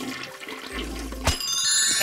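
A toilet flushing, with water rushing, then a click and a bright chiming jingle with several ringing tones starting about a second and a half in.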